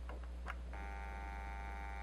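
A click about half a second in, then a stepper motor driven by an Arduino indexer controller turning steadily for the rest, a steady whine of several even tones, as it rotates the workpiece through one 45-degree index step.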